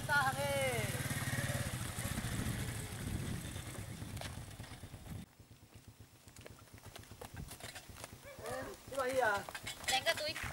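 Small motorcycle engines running at low speed as the bikes roll in, a low rhythmic putter that cuts off abruptly about five seconds in.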